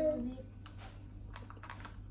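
Small wooden counting bars of Montessori-style place-value material clicking against each other as they are handled, an irregular run of light, sharp clicks.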